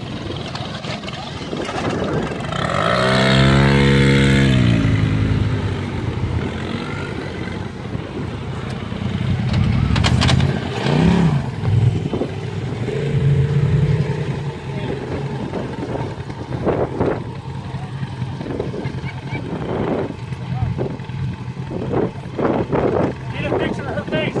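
Polaris RZR side-by-side engine running and revving as the vehicle crawls over steep slickrock. The loudest rev comes about three seconds in, with more bursts of throttle around ten seconds in and again later.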